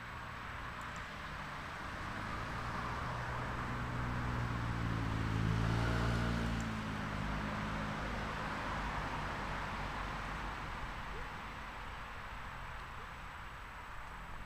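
A motor vehicle's engine passing by, a low hum that swells to its loudest about six seconds in and then fades away, over a steady background hiss.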